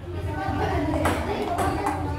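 Table tennis ball clicking off paddles and the table in a rally, a few sharp taps in the second half, over the voices of people watching.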